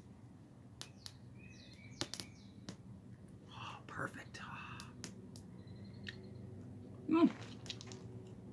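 A small twig fire on tinfoil burning quietly, with scattered faint crackles and clicks, and a few brief bird chirps in the background. Near the end comes a short, louder voiced sound from the man, falling in pitch.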